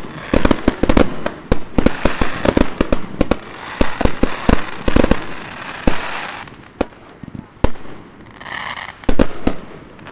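Fireworks finale: a rapid barrage of aerial shell bursts with crackling stars, thinning out after about six seconds to a few last scattered bangs.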